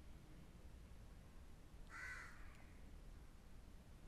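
Near silence with one short bird call about two seconds in.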